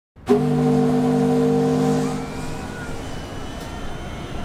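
Ocean liner's horn blowing one long steady chord that fades out about three seconds in, then the noise of a crowd seeing the ship off.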